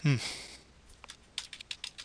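A quick run of about eight sharp key clicks on a computer keyboard, starting about a second in.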